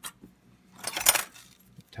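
Small steel lathe tooling, such as boring bars and tool holders, clinking together as it is handled: a single click at the start, then a short burst of metallic clinks and jangles about a second in.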